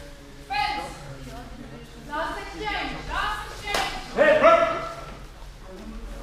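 Short, loud shouts from people during a HEMA fencing exchange, several separate calls, the loudest a little after the middle, echoing in a large sports hall. A sharp crack comes just before the loudest shouts.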